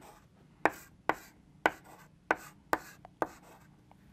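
Chalk writing on a blackboard: about six sharp taps of the chalk striking the board, roughly every half second, with faint scratching of the strokes between them.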